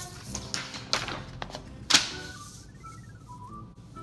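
Sheets of paper swept and slid across a wooden tabletop, with a few knocks, the loudest about two seconds in. After that a faint tune of thin, high notes plays.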